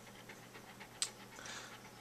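A dog panting softly after exercise, with one sharp click about halfway through.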